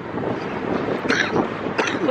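Steady city street noise: passing traffic and wind on the microphone, with short snatches of voices about a second in and near the end.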